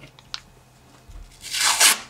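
A strip of adhesive tape pulled quickly off its roll: one short rip about one and a half seconds in, lasting about half a second.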